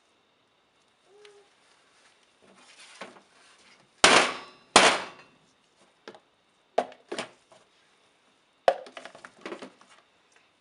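Clatter of plastic pitchers and utensils knocked and set down on a stainless steel worktop: two loud knocks with a short ring about four and five seconds in, then lighter clicks and scraping.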